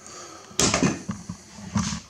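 Handling noise from the open metal chassis of a piece of test gear: a sudden knock about half a second in, then irregular clunks and scraping, with another burst near the end.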